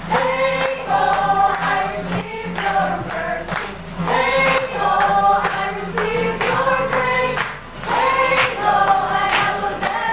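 A small congregation of mostly women and children singing a worship song together, in sung phrases of a second or two with short breaths between them, accompanied by a strummed acoustic guitar.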